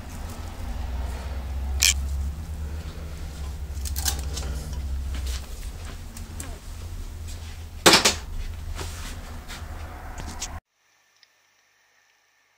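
A few sharp metallic clicks and knocks, about two seconds in and again near eight seconds, as a CVT's removed steel push belt and pulley parts are handled, over a steady low hum. The sound cuts out to silence near the end.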